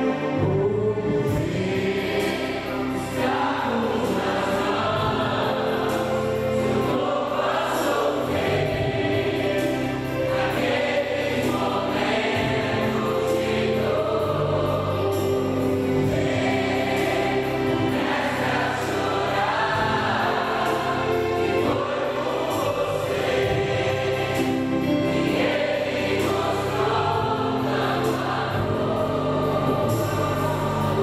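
Mixed church choir singing a gospel song in parts, with held notes and sustained low accompaniment.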